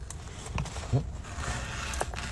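A person biting into a pizza slice, with faint handling noise and two brief low vocal sounds about half a second and a second in.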